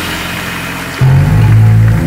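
A live band of bass, guitars, keyboards and drums playing the close of a song; about a second in, a loud low chord comes in and is held.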